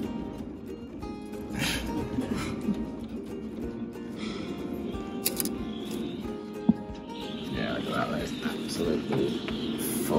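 Background music with held notes, laid over the footage.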